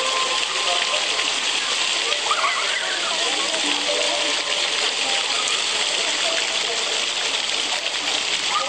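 Ground-level fountain jets spraying and splashing onto wet paving, a steady hiss of water, with faint voices of people in the background.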